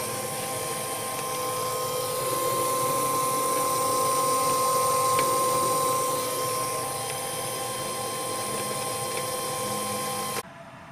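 Stallion pellet extruder's NEMA 34 stepper motor running at 45 RPM, a steady whine, as it drives the screw to inject molten PLA into a mold.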